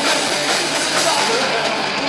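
Live punk rock band playing loudly: two electric guitars and a drum kit, with the lead singer singing into the microphone.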